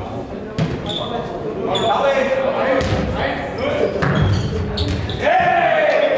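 A Faustball being struck and bouncing off the sports-hall floor in several sharp impacts, among players' shouts and calls, all echoing in a large hall.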